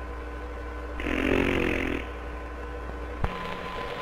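A buzzing, rasping cartoon sound effect lasting about a second, heard as the ink dropper sucks the character back up. A steady hum from the old soundtrack runs under it, and a click comes about three seconds in.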